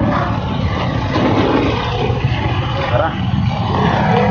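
Street traffic: passing vehicle engines and road noise, with voices mixed in.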